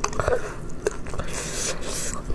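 Close-miked chewing of a mouthful of spicy, chewy beef skin: wet, squishy mouth sounds with scattered sharp clicks. A brief rush of breath comes near the end.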